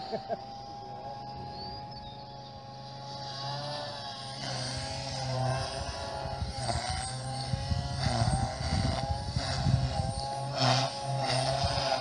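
OXY 3 electric RC helicopter in flight. Its motor and rotor whine bends up and down in pitch as the load changes through manoeuvres, and gets louder about four seconds in.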